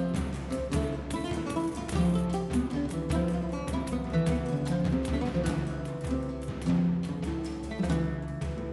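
Background music: a melody on a plucked string instrument, guitar-like, with evenly spaced plucked notes.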